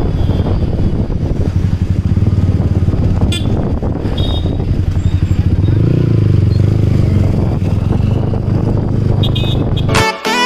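Motorcycle engine running as the bike rides along in traffic, its note swelling for a second or two around the middle.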